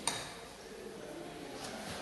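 A single short knock right at the start, then faint room noise with light handling on the bench.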